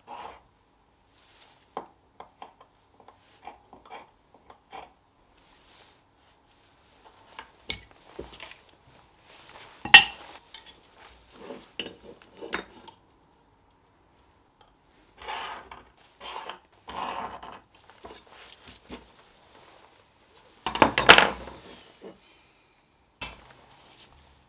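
Small steel plates and a steel scriber handled on a workbench: scattered light clicks and short scrapes, a sharp metal clink about ten seconds in, and a louder clatter of metal near the end.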